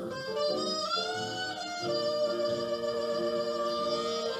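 An old jazz recording: a soprano saxophone plays a slow melody of long held notes over a band accompaniment, sliding up in pitch about a second in.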